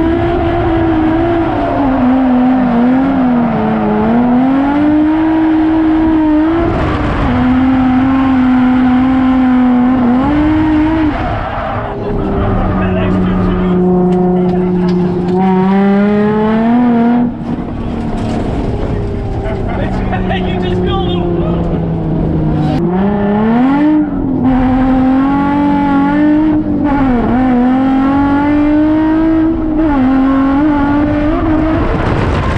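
Nissan 350Z's V6 engine heard from inside the cabin, held at high revs with its pitch swinging up and down as the car is drifted. Twice in the middle the revs drop lower for a few seconds, then climb back up.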